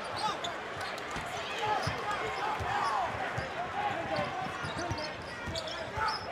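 Basketball game ambience on a hardwood court: a ball bouncing again and again, with voices and crowd noise around it.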